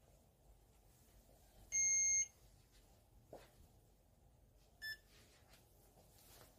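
PAX S80 card terminal beeping as it finishes installing a firmware update and goes to reboot: one steady half-second beep about two seconds in, a faint click, then a second, shorter beep near the end.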